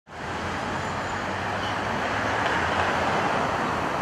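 Steady road traffic noise from vehicles on a city street, a rushing hiss that swells slightly in the middle as a vehicle passes.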